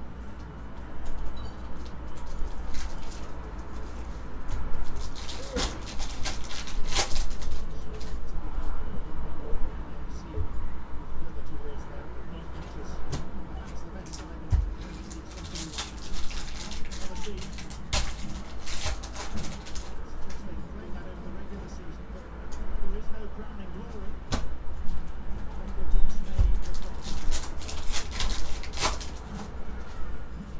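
Foil trading-card pack wrappers crinkling and crackling as packs are handled and one is torn open. The crackles come in bursts several seconds apart over a steady low hum.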